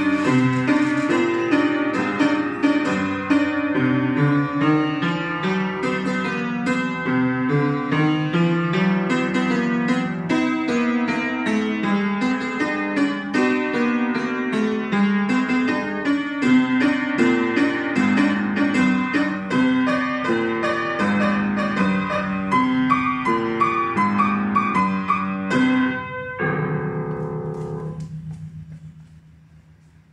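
Piano playing a lively boogie piece: quick notes in the right hand over a moving bass line. About 26 seconds in it ends on a final chord that dies away over about two seconds.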